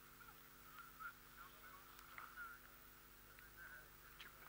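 Near silence: a faint hiss with a few scattered faint, short high chirps and squeaks.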